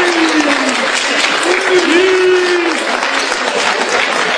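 Audience applauding steadily in a hall, with a voice calling out over it a few times in long held notes, the first falling in pitch.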